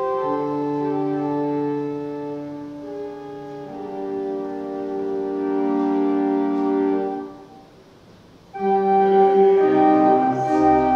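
Church organ playing a hymn in held chords. It breaks off for about a second near the end, then comes back in louder.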